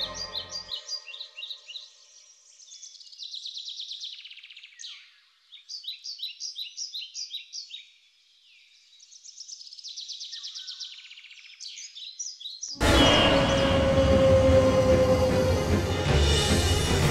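Birds singing outdoors: bursts of high repeated chirps and quick trills with short pauses between them. About thirteen seconds in, loud dramatic music cuts in suddenly and is the loudest sound.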